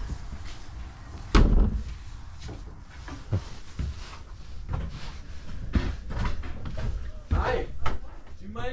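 A door in the trailer's bedroom being opened and shut: one sharp knock about a second and a half in, then a few lighter knocks.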